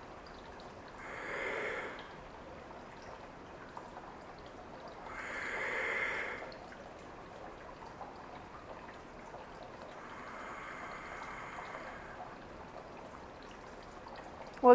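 A woman's slow, audible breaths, three of them several seconds apart, over a faint steady trickle of water from an indoor tabletop fountain.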